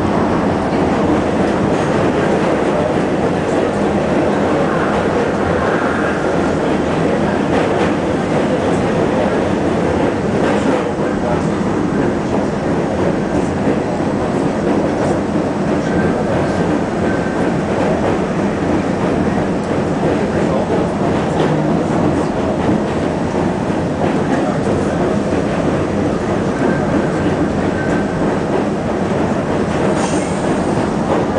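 R-68 subway train running at speed on steel track, a loud steady rumble of wheels and running gear heard from inside the front car, with a few sharp clicks along the way.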